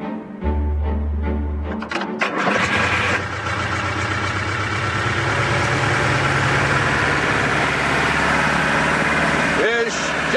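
After a short stretch of music, an old tractor's engine starts with a few clattering turns about two seconds in, then runs steadily.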